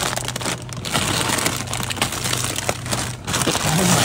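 Plastic frozen-food bag crinkling and rustling as it is pulled out of its cardboard case, over a low steady hum.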